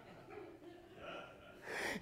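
Quiet room tone, then a man's sharp intake of breath near the end.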